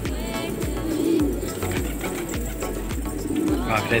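Domestic pigeons cooing, low coos coming roughly once a second, over background music.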